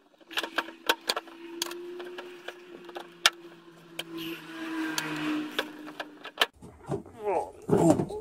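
Scattered sharp clicks and knocks of hard parts as tight shift solenoids are wiggled out of a ZF6HP26 six-speed automatic transmission's valve body, over a faint steady hum.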